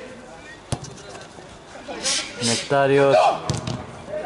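A single sharp kick of a football, heard as one crisp knock about a second in, followed a couple of seconds later by a man's short loud shout.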